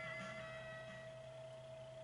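Pachislot machine's electronic sound dying away: a steady tone with a few fading ringing tones above it, growing quieter.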